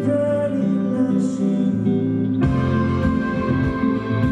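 Live band music, a slow pop-rock song with a man singing over electric guitar. About two and a half seconds in the arrangement fills out, with drum hits coming in.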